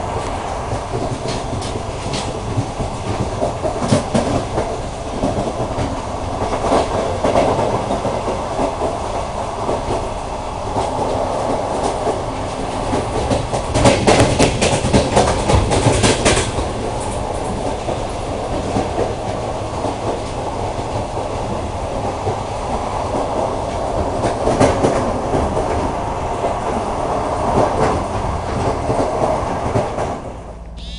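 Passenger train running along the track: a steady rumble with irregular clicks of the wheels over the rails, louder for a couple of seconds around the middle.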